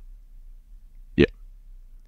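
Speech only: a quiet pause broken about a second in by one short spoken "yeah".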